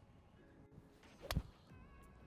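A golf iron striking the ball off the tee once, a short sharp hit a little over a second in. It is a fat, poor strike that catches the ground before the ball.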